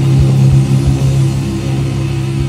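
Doom metal band recording: distorted electric guitars and bass hold a low, heavy chord over steady kick-drum beats, with no vocals.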